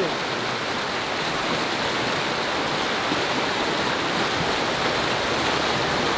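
Fast mountain river rushing through white-water rapids just below, a steady, unbroken rush of water.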